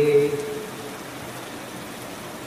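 A man singing a naat without instruments holds the last sung word of a line, which fades out about half a second in, leaving a steady hiss of rain.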